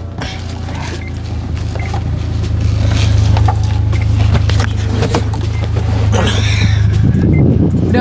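Scattered plastic clicks and taps as a phone-holder bracket is pressed and snapped onto a car dashboard, over a steady low hum in the cabin that grows gradually louder.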